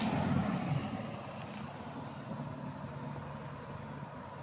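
A steady low rumble like a running motor, a little louder in the first second and then even.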